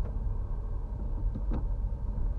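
A car moving slowly on wet asphalt, heard from inside the cabin: a steady low rumble of engine and tyres, with a couple of faint ticks past the middle.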